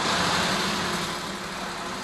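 A steady mechanical running noise: a low hum under a broad hiss, constant in pitch and level.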